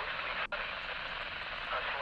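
Wouxun KG-UV9D handheld radio's speaker hissing with static as it receives a weak, attenuated NOAA weather radio signal, the reception cutting out briefly about half a second in.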